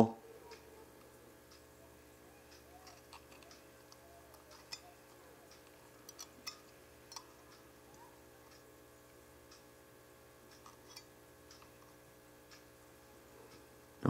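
Faint, scattered clicks and light taps of a small metal tool against the wire coils and posts of a Helios rebuildable dripping atomizer as a coil is nudged into position, over a faint steady hum.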